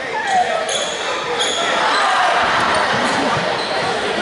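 Spectators chattering and calling out in a school gymnasium, a steady crowd din, with a few short high squeaks in the first second and a half.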